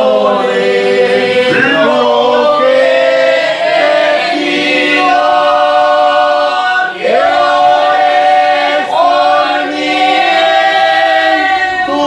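A congregation singing a Spanish-language praise hymn together without accompaniment, in slow, long-held notes that shift pitch every second or two.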